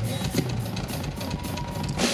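Live rock drum kit played in a fast run of hits, several strikes a second, over a steady low hum.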